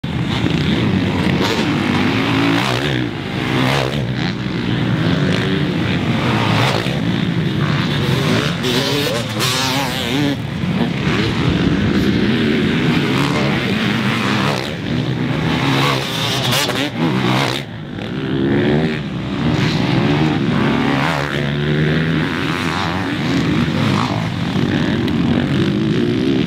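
Several motocross bikes revving hard as they ride past close by, one after another, on a dirt track. The engine pitch repeatedly climbs and drops as they accelerate and change gear.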